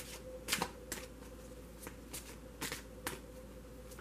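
A tarot deck being shuffled by hand: a series of short, sharp card clicks at irregular intervals, about seven in four seconds.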